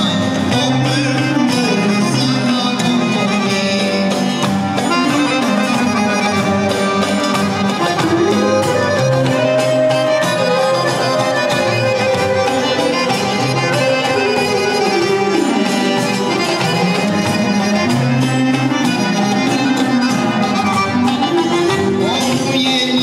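Instrumental break in a live Albanian folk song: a sustained melody line over guitar accompaniment, with little or no singing.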